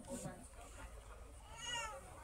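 A small child's short whiny cry, arching up and then down in pitch, about one and a half seconds in, over faint background chatter.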